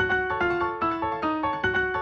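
Instrumental music: a piano-sounding keyboard plays a repeating figure of struck notes, a little over two a second, each note fading after it is struck.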